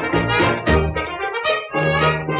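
1920s dance-orchestra fox trot playing from a Victor Orthophonic 78 rpm shellac record: an instrumental passage without singing.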